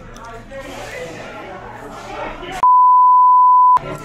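Background voices chattering, then a loud one-second censor bleep: a steady pure tone near 1 kHz that cuts in about two and a half seconds in, with all other sound dropped out beneath it.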